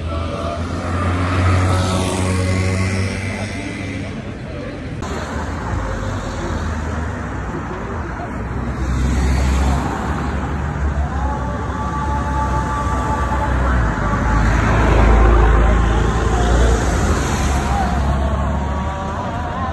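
Busy street sound: road traffic passing, with voices of a crowd of football fans in the background and a low rumble throughout.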